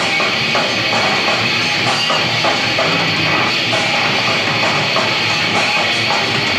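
Metalcore band playing live: loud distorted electric guitars and a drum kit pounding on continuously.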